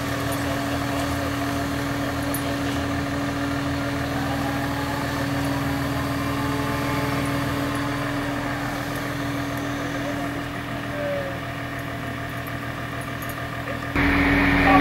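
Mobile crane's engine running steadily with a constant low hum while it hoists a steel frame.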